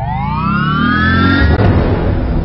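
A synthesized rising sweep used as a transition sound effect: a pitched whoosh climbs steeply and levels off about a second and a half in, over a low rumble, then spreads into a noisy wash.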